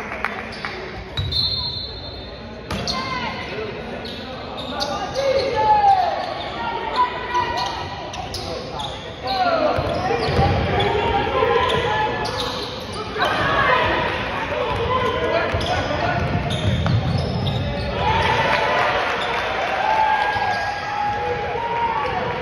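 A basketball bouncing on a hardwood gym floor and sneakers squeaking in short chirps as players move, over voices calling out, all echoing in a large gym.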